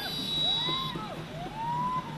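Siren-like wailing that swoops up and down in pitch about three times, with a thin high steady tone in the first second, over the steady din of a street rally crowd.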